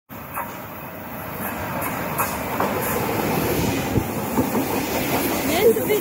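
SBB double-deck electric train coming out of a tunnel and running in alongside the platform, growing louder as it nears, with its wheels clicking over the rail joints.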